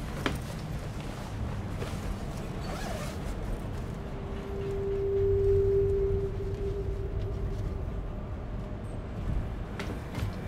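A guitar case being opened and an electric guitar lifted out, with a sharp click just after the start and soft handling and zip-like sounds, over the steady rumble of a moving train carriage. In the middle, a single steady low tone swells and fades.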